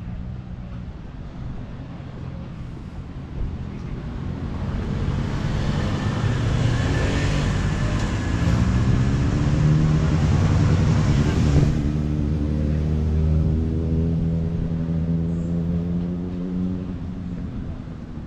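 A bus engine running as it drives slowly past on the road alongside, with traffic noise. It grows louder over the first half, is loudest about two-thirds of the way in, then fades away near the end.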